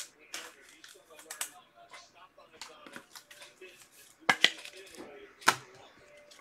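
Trading cards being handled and set down on a table: faint light rustles and clicks, with two sharper taps about a second apart near the end.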